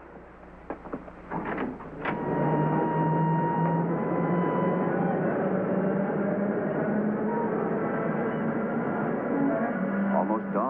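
Subway train running, heard from inside the car: a loud, steady rumbling noise with a low hum that comes in about two seconds in, after a few short knocks.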